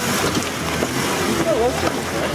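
Jeep Wrangler Rubicon's engine running at low speed as it crawls up a slope close by, a steady low rumble, with faint voices in the background.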